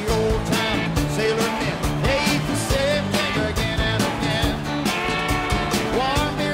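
Live rock band playing music, with a steady drum beat under a bending melodic line.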